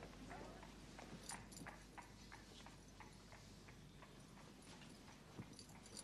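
Near silence with faint, regular clicks or knocks, about three a second.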